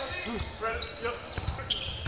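Live basketball game sound on an indoor court: a ball dribbled on the hardwood with dull bounces, under faint voices of players and crowd echoing in the gym.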